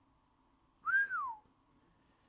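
A person whistles once, a single short note about a second in that rises a little and then slides down over about half a second.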